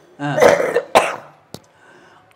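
Elderly woman clearing her throat in a rough burst, then giving one sharp cough about a second in.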